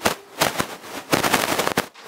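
Handling noise close to a microphone: loud bursts of rustling and knocking with short pauses between them.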